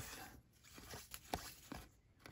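Cardboard baseball cards faintly sliding and ticking against each other as they are thumbed through by hand, a few light ticks.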